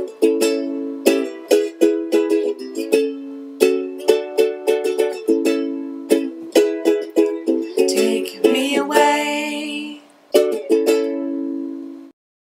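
A solo Aloha ukulele strummed in repeated chords as an instrumental close to the song. The playing pauses about ten seconds in, and two final strums ring out.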